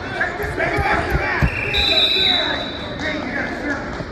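Spectators' voices calling out around a wrestling mat in a gym, with a few dull thuds of bodies and feet on the mat in the first second and a half. A steady high whistle sounds for about a second, starting near the two-second mark.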